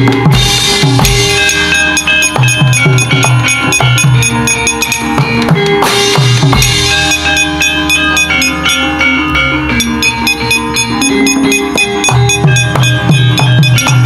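Gamelan accompaniment to a wayang kulit show playing loudly: bronze keyed instruments ringing over steady, driving drum strokes.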